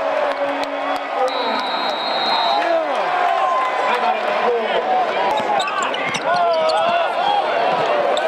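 Live basketball game sound in an arena: a ball bouncing on the hardwood court, with sharp knocks, among crowd voices and shouts.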